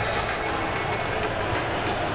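Music playing over the arena's sound system during a stoppage in play, heard from the stands, with the crowd's background noise underneath.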